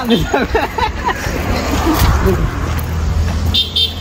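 A motor vehicle passing on the road, its low engine rumble growing through the second half, with two short high beeps near the end.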